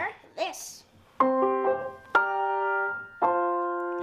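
Grand piano: three chords struck one after another about a second apart, each held and ringing into the next, as a chord progression is tried out at the keyboard.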